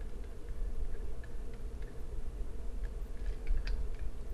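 Faint, scattered clicks and taps of computer input over a steady low hum of room tone.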